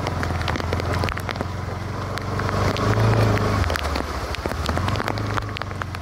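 Bajaj Pulsar motorcycle's single-cylinder engine running as it is ridden slowly on a wet road, rising briefly about three seconds in. Rain ticks and crackles over it.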